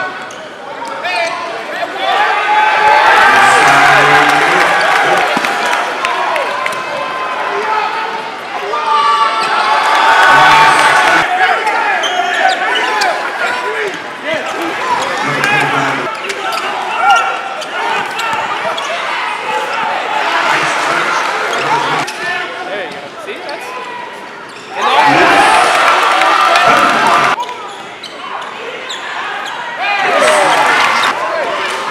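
Live basketball game sound in a gymnasium: a ball dribbling on the court amid continuous crowd voices, growing louder for a couple of seconds near the end.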